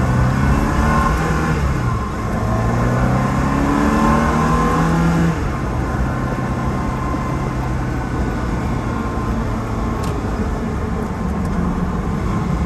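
Ferrari 360 Spider's V8 under hard acceleration: the engine note rises, drops at a quick paddle-shift upshift about two seconds in, and rises again. About five seconds in the driver lifts off and the engine fades under steady road and wind noise.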